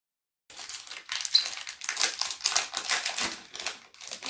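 Foil Pokémon booster pack wrapper crinkling and tearing as hands pull it open, a dense run of quick rustles starting about half a second in. The pack's seal is stubborn and takes effort to break.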